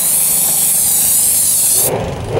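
Aerosol spray can of cleaner hissing steadily as it sprays onto a carbon-caked intake manifold cover and gasket, soaking the buildup to loosen it. The spray cuts off suddenly near the end.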